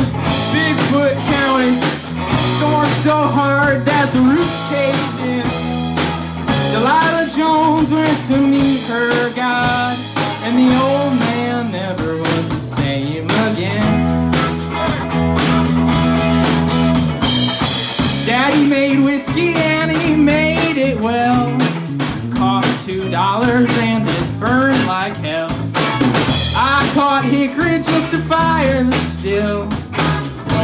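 Live band playing a rock song: electric guitar, bass guitar and drum kit keeping a steady beat, with a male voice singing over it.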